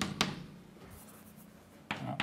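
Chalk writing on a blackboard: a sharp tap of the chalk just after the start, faint scratching strokes, then another tap near the end.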